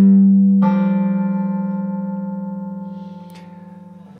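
Fender Stratocaster electric guitar: a note struck loudly, then about half a second in the tremolo bar pulls two strings up a whole step into a parallel sixth. The notes ring on and slowly die away.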